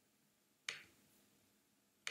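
A single sharp click about two-thirds of a second in, dying away quickly, over near silence.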